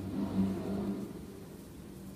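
A low engine hum, as from a passing vehicle, slowly fading away.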